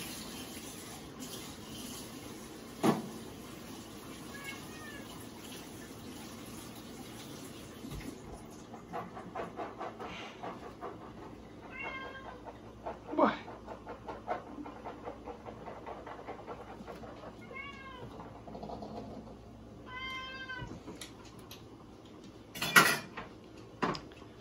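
Domestic tabby cat meowing several times, short calls that rise and fall in pitch: begging for food while a can is about to be opened. A few sharp knocks sound in between, the loudest near the end.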